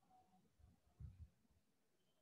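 Near silence: room tone, with a faint low thump about a second in.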